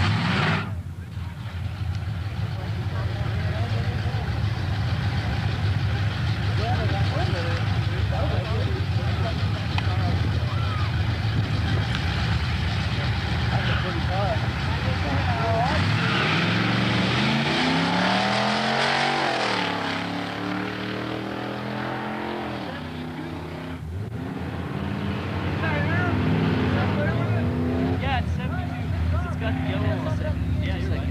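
Drag-racing car engines running loud. From about halfway, one engine accelerates, its pitch climbing, falling back briefly and climbing again. After a break, a steadier engine note follows.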